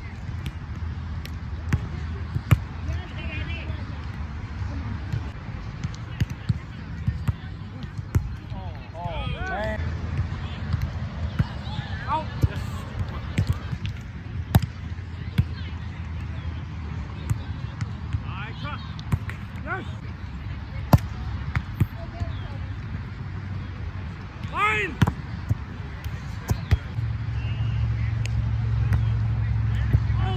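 Volleyball rally on grass: repeated sharp slaps of hands and forearms on the ball, with players' short shouted calls, over a low steady rumble that grows louder near the end.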